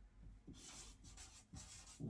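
Faint scratchy strokes of a felt-tip marker writing on a large sheet of chart paper, several short strokes in a row.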